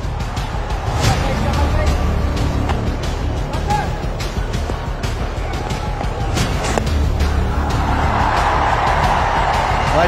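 Cricket stadium crowd noise over background music. There is a sharp knock about six and a half seconds in, as the ball is bowled and hit, and the crowd swells near the end as the shot runs into the deep.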